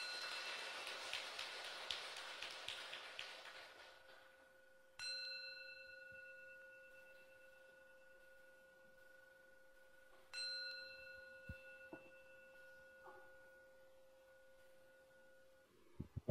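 A Buddhist bowl bell struck three times, about five seconds apart, closing the dharma talk. Each stroke gives a clear, steady ringing tone that slowly fades.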